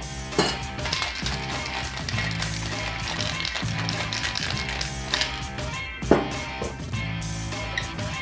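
Background music over ice rattling in a metal cocktail shaker as it is shaken hard, with a sharp knock about six seconds in.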